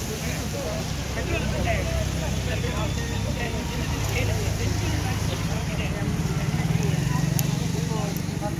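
Low, steady rumble of road traffic engines under the indistinct overlapping chatter of a crowd, the rumble growing louder near the end.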